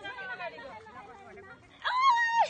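Faint voices chattering at a distance, then a loud, high-pitched call from a voice beginning near the end.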